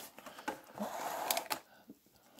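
Foil-wrapped trading card packs rustling softly as they are handled, with a few light clicks.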